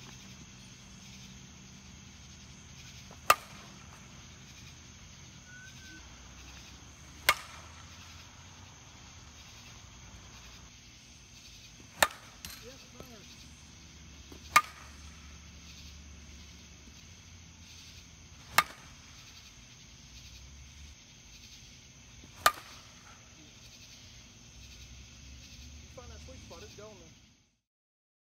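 A two-piece carbon composite slowpitch softball bat (the 2020 ONYX Ignite) hitting pitched softballs. There are six sharp cracks of bat-on-ball contact, spaced about three to five seconds apart.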